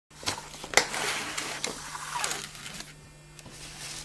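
Things being handled and shifted about on a table: a few sharp knocks in the first two seconds and a rustling, sliding noise of paper and cardboard, over a low steady hum.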